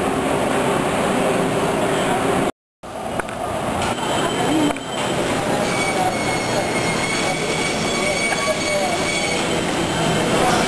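Busy city street noise with rumbling traffic. About two and a half seconds in, the sound cuts out briefly. It gives way to indoor market hubbub of voices over a steady machine hum with faint high whines.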